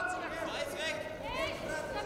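Voices calling out in a large hall in short calls, their pitch rising and falling sharply, over a steady background of hall noise.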